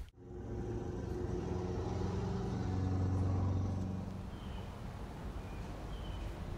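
A motor vehicle's engine hum that swells to its loudest about three seconds in, then fades away, as a vehicle passes.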